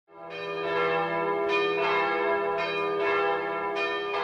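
Church bells ringing: several overlapping strikes, each adding fresh ringing over a sustained hum.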